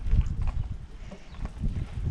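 Bicycle rolling over interlocking paving stones: a low rumble from the tyres with irregular knocks and rattles.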